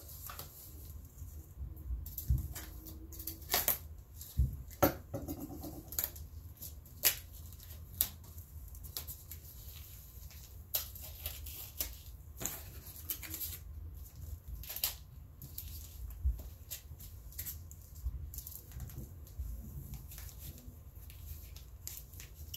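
Tape being picked and peeled off plastic packaging by hand: irregular small crackles and clicks, with a few sharper snaps.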